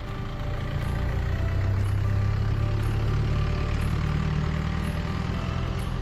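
A low vehicle engine rumble that builds over the first two seconds and then holds steady, loud over faint background music.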